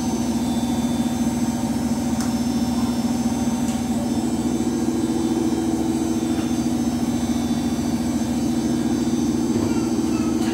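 Samsung WF80F5E0W2W front-loading washing machine spinning its drum in the final spin: a steady motor hum, with a second, slightly higher tone coming in about four seconds in.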